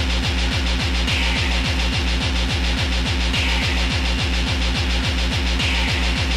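Hardcore techno played in a DJ mix: a fast kick drum on every beat, each kick sweeping down in pitch, under a dense, hissy wash of synth sound.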